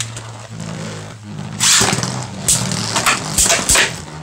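Two Beyblade Burst spinning tops, Cosmo Dragon and Bushin Ashura, spinning on a plastic stadium floor with a steady low hum. In the second half they clash, with scraping stretches and several sharp hits.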